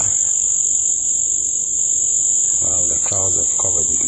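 A steady high-pitched whine, unbroken throughout, with a man's voice speaking low over it for the last second or so.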